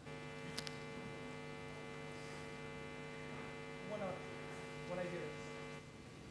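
Steady electrical mains hum with many evenly spaced overtones, switching on abruptly and cutting off suddenly just before the end, with faint distant voices under it about four and five seconds in.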